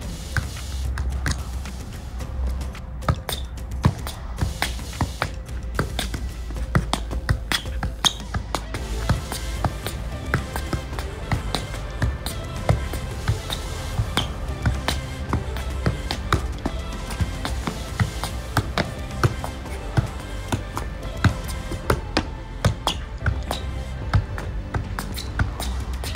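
Background music with a steady beat, over repeated dull thuds of a basketball being juggled off the feet, about one or two touches a second.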